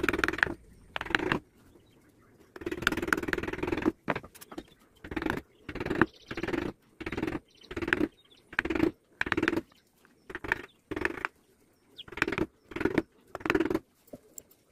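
Narrow hand chisel cutting into teak: a run of short scraping cuts, a little over one a second, with one longer stroke about three seconds in.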